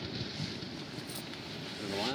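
Steady wind noise on the microphone, an even hiss with no distinct events.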